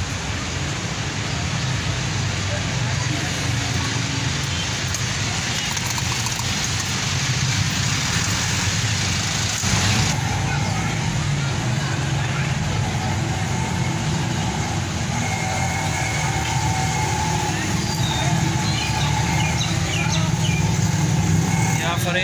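Potato chips deep-frying in hot oil in steel fryer pots: a steady bubbling sizzle over a continuous low rumble. The hiss eases suddenly about ten seconds in.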